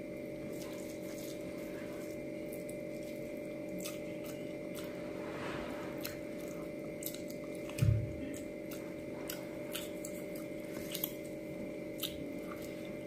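Close-miked eating by hand: wet chewing with many small mouth clicks, and fingers squishing rice and curry on a steel plate. A single low thump sounds about eight seconds in, the loudest moment, over a steady background hum.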